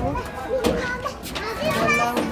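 Young children's voices chattering and calling out at play, several high voices overlapping.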